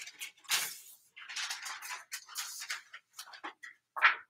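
Sheets of paper rustling as they are handled, in irregular bursts.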